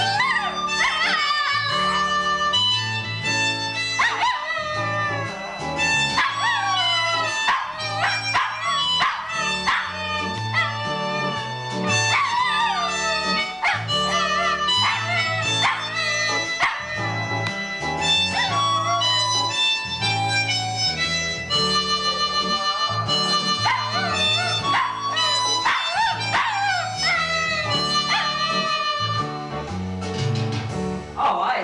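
A Shih Tzu howling and yipping along to electronic keyboard music. Its cries come over and over, each bending up and down in pitch, above a steady bass line that changes note every second or so.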